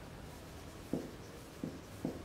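Faint marker strokes on a whiteboard as figures are written, with two brief, slightly louder low sounds, about a second in and again near the end.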